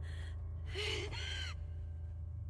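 A man's strained, breathy gasp with a short cry in it about a second in, from an animated character's voice, over a low steady hum.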